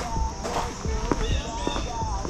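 Irregular footsteps on stone patio pavers over a steady high-pitched insect drone.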